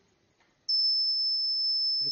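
Small electronic buzzer on an RFID toll-barrier circuit board sounding one steady, high-pitched tone that starts abruptly under a second in: the low-balance alert, given because the card's balance has run down to zero.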